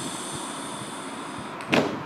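A steady high hiss, then a single sharp slap of hands coming down on a table near the end.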